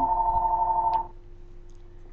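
A telephone ringing: an electronic ring of two steady notes pulsing rapidly, which cuts off about a second in.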